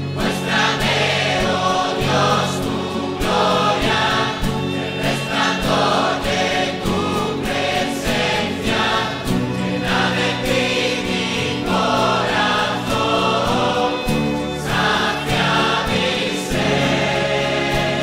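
Christian choral worship music: a choir singing sustained phrases over a steady accompaniment.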